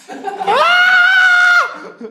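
A person's loud, high-pitched squeal: it rises about half a second in, holds one pitch for about a second, then drops away.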